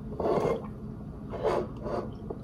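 A woman breathing out heavily twice, about a second apart, each breath short and breathy.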